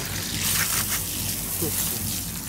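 Garden hose spraying water onto a pickup truck's metal bed and tailgate: a hissing splash that eases off about a second in.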